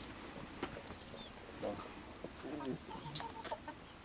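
Faint, short animal calls, a few of them in the second half, over a quiet outdoor background.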